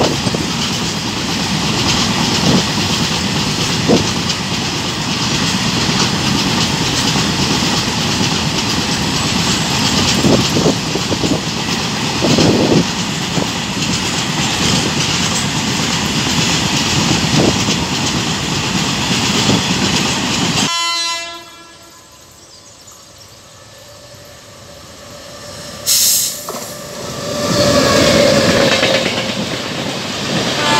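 Freight train of covered cement hopper wagons passing close by, the wheels clattering over rail joints under a steady rush of noise. About two-thirds of the way in, the noise drops away abruptly and a short horn note is heard. Near the end the clatter of a second, passenger train builds up.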